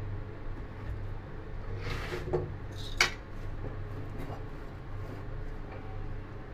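Kitchen handling sounds from a wok and utensils over a steady low hum: a brief rustle about two seconds in, then a single sharp clink about three seconds in.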